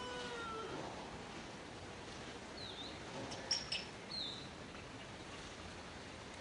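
Newborn macaque crying: a held, pitched note that fades out within the first second. Later come two short high chirps and a quick cluster of sharp ticks.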